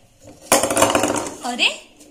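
A stack of four balls topples onto a wooden tabletop: a quick clatter of many bounces and knocks starting about half a second in and lasting about a second.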